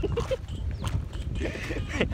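Men laughing: a few short voiced laughs in the first half second, then softer breathy laughter.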